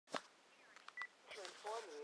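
A sharp click, then a short single beep about a second in, then a recorded automated telemarketing voice starts playing through a flip phone's speaker.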